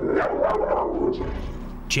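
American bulldog barking aggressively in a short rough outburst that is loudest at the start and fades over the next second and a half, a defensive reaction to a visitor.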